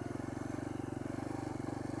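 Sinnis Apache 125cc single-cylinder motorcycle engine with an aftermarket D.E.P. exhaust, running steadily with a quick, even pulse as the bike rolls along slowly.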